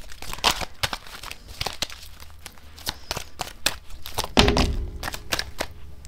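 Tarot deck being shuffled by hand: a run of quick card flicks and rustles, with one louder low thump about four and a half seconds in.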